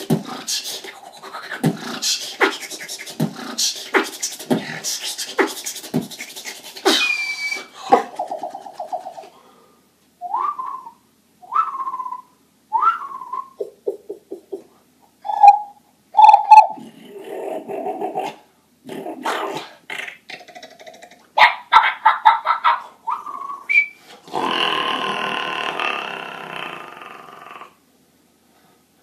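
Solo beatboxing: a steady beat of kick-drum and hi-hat sounds for about seven seconds, then a broken-up passage of short rising whistle-like chirps, quick clicks and hummed notes. A long held buzzing sound comes a few seconds before the end.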